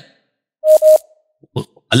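A man's short double cough about half a second in, two quick bursts run together, followed by a few faint clicks before he speaks again.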